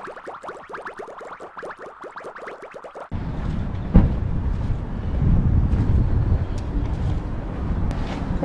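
A short logo jingle of quick, rapidly repeated notes lasts about three seconds and cuts off suddenly. It gives way to a steady low outdoor rumble of wind and traffic on the camera microphone, with one sharp knock about four seconds in.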